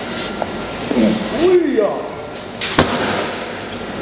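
A man's strained, pitch-bending shout as a strongman swings and hurls a round throwing weight upward, then one sharp bang nearly three seconds in as the weight strikes something.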